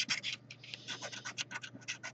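Scratch-off lottery ticket being scratched, a rapid run of short, light scraping strokes that grow fainter after about half a second.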